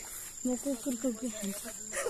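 A person speaking softly for about a second and a half, under a steady high-pitched insect drone.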